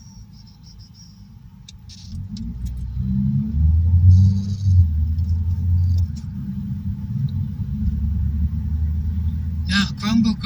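Low engine and road rumble inside a car's cabin, growing louder about two seconds in as the car pulls away from a stop and picks up speed.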